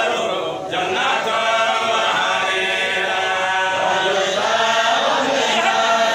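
A group of voices chanting together without instruments, with a brief dip about half a second in.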